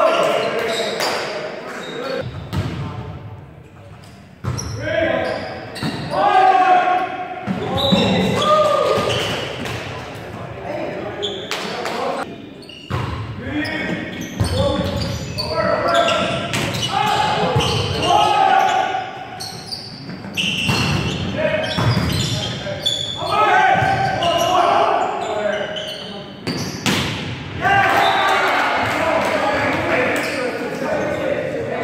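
Players' shouts and calls mixed with sharp slaps of a volleyball being hit and bouncing on the hardwood floor, echoing in a large gymnasium.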